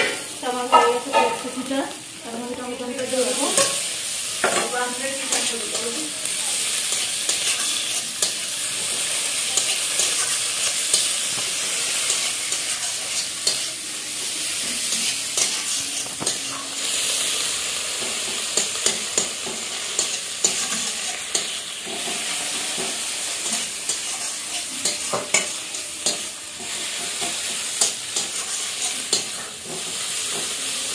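Sliced onions and green chillies sizzling in hot oil in a kadai, frying the base for a masoor dal tarka. A steel spatula scrapes and clinks against the pan with frequent short strokes over the steady sizzle.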